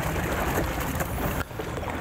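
Water sloshing and splashing in a bass boat's livewell as live bass are grabbed and lifted out, a steady rushing splash that dips briefly about one and a half seconds in.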